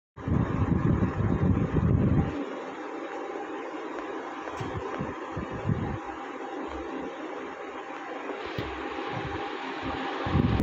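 Low rumble of air buffeting the microphone, heavy for about the first two seconds, then a steady hiss with a faint hum and occasional low gusts.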